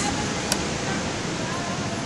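Steady wind rushing over the phone's microphone, with a single sharp click about half a second in.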